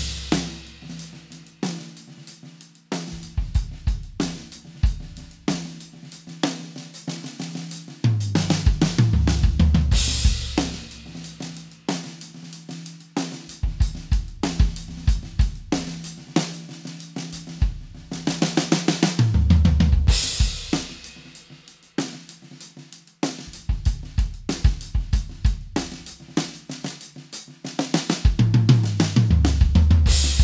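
Drum kit played in a groove with fills, built around a late-1990s Ludwig Acrolite LM404 5x14 aluminum snare tuned low with its internal muffle off, fitted with a coated Remo Ambassador X head and German snare wires. A steady stream of sharp snare and kit hits is broken three times by a crash cymbal ringing over the bass drum.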